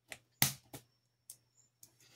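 Five short clicks and taps from small plastic craft tools and a gem case being handled on a wooden tabletop, the loudest about half a second in.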